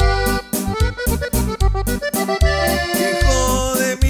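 Norteño corrido instrumental break: an accordion plays a quick melodic run over a steady bass beat.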